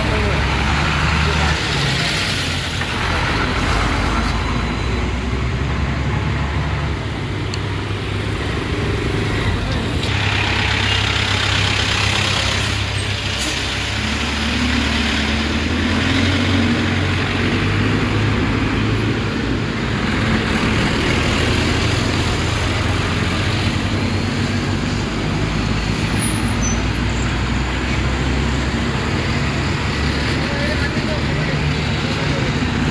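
Roadside traffic: the engines of a heavy tanker truck and passing cars running close by, a steady low rumble throughout, with voices mixed in.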